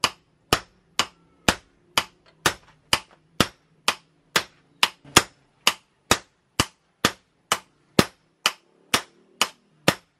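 Hammer blows on a red-hot golok blade of car leaf-spring steel at the anvil. The blows fall in a steady, even rhythm of about two a second, each a sharp metallic strike with a brief ring.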